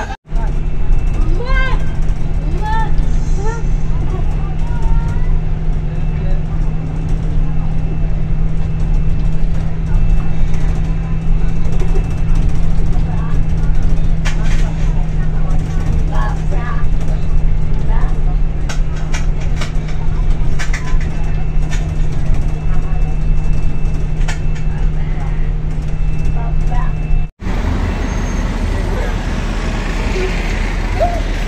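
Steady drone inside a moving bus, engine and road noise with a constant low hum, and faint voices of passengers in the background. About 27 seconds in it cuts abruptly to outdoor crowd noise.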